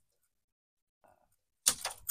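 Near silence, then a woman begins speaking near the end.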